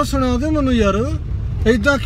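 A voice talking inside a moving car's cabin, over the car's steady low engine and road rumble.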